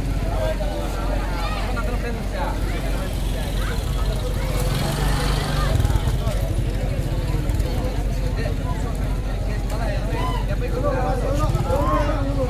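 An engine running steadily close by, a low pulsing rumble under people talking in a crowd.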